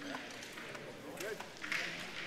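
Large-hall ambience: a faint murmur of distant voices, with a few light clicks from crokinole discs on the boards.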